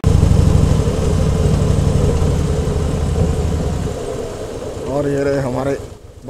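Cruiser motorcycle engine running as the bike rides along, a deep low throb that eases off about four seconds in. A voice is heard briefly near the end.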